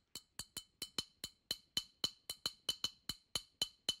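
Small hollow African bell struck with a thin stick in an even rhythm of about four to five strikes a second, each strike ringing with two high pitches. The player's cupped hand around the bell acts as its resonance box.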